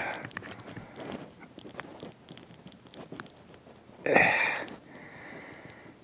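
Small scattered clicks and handling noise as fingers work the plastic hand of a Hasbro Indiana Jones action figure around its tiny lantern accessory. A short, louder burst of noise comes about four seconds in.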